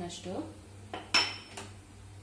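A metal spoon knocks against an aluminium cooking pot about a second in: a sharp clink with a short metallic ring, as turmeric powder is tapped off the spoon into the water.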